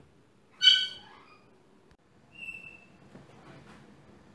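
Two high whistle-like calls. The first, about half a second in, is loud and short with a falling tail; the second, a little after two seconds, is a fainter, steady high peep.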